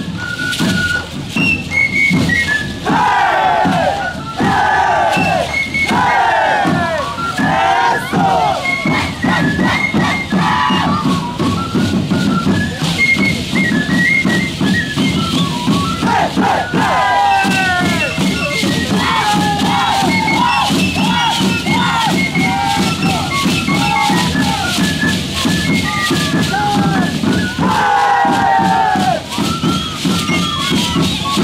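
Shacshas dancers' leg rattles of dried seed pods clattering with their stamping steps, under repeated high, falling whoops from the dancers and band music.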